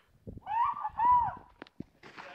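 Two high, hooting whoops from a person close by, one straight after the other, each rising and then falling in pitch. Two short knocks follow near the end.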